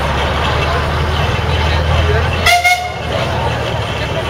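A steam traction engine's whistle gives one short toot about two and a half seconds in, over a steady low rumble and crowd chatter.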